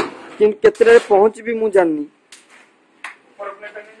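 A person talking, with a few short sharp clicks. The talk breaks off for about a second past the middle, then resumes.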